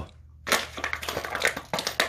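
A dog chewing on a plastic bottle, the plastic crunching and crackling in its jaws in quick irregular crackles that start about half a second in.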